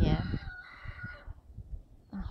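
A rooster crowing once, a long drawn-out crow that ends a little over a second in.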